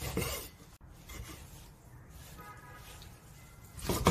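Chinese cleaver cutting raw beef brisket into chunks on a wooden chopping board: faint slicing and rubbing of the blade through the meat, with one sharp knock of the blade on the board just under a second in.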